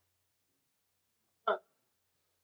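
Near silence broken once, about one and a half seconds in, by a single short catch of breath from a man's voice, a brief gasp rather than a word.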